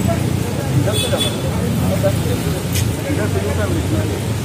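Indistinct voices of several people talking over a steady low rumble of road traffic.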